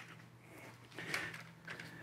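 Faint knocks and clicks of metal tripods being handled and set down on a floor, a few light strikes about a second in and near the end, over a low steady hum.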